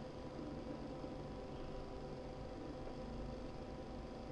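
Quiet room tone: a faint steady background hiss with a low electrical hum, and no distinct sound events.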